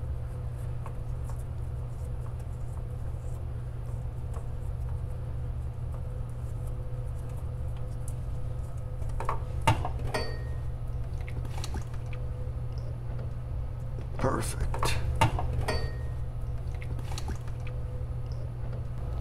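A steady low hum throughout, with a few short clicks and scrapes about nine to ten seconds in and again in a cluster around fourteen to sixteen seconds in, as the oil filter is spun off its mount by hand and lowered away.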